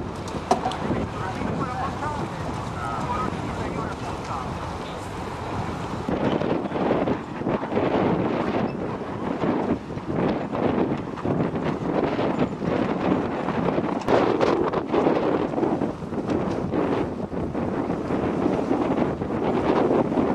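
Wind buffeting a camcorder microphone in uneven gusts, louder and rougher from about six seconds in.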